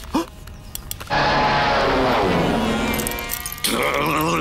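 A bunch of keys jangling, loud, for about two and a half seconds starting about a second in, with a falling tone beneath.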